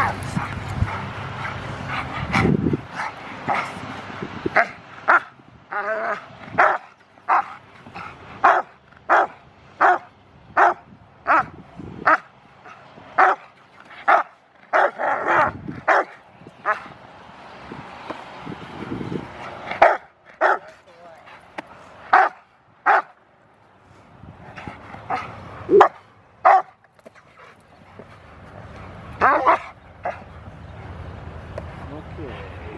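Rottweiler barking at a decoy during protection work: a long run of single sharp barks, about one or two a second, broken by a few short pauses.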